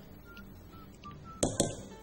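A spatula working against a stainless steel mixing bowl as cake batter is scraped out into a tube pan: quiet, with a few sharp clicks and knocks about one and a half seconds in.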